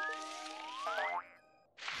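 Cartoon stretching 'boing' sound effect: springy glides rising steeply in pitch over light music, as the mushroom seats shoot upward. It cuts off about a second in, leaving a brief hush.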